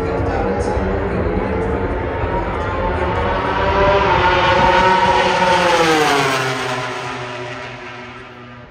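MotoGP four-stroke racing motorcycle engine at full throttle, approaching with its pitch climbing. It passes loudest about five seconds in, then drops sharply in pitch and fades as it speeds away down the main straight.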